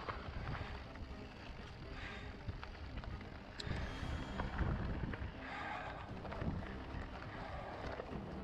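Mountain bike rolling along a dirt singletrack, tyres crunching over the trail, with wind buffeting the camera's microphone. A few short clicks and rattles from the bike come through, one just over a third of the way in.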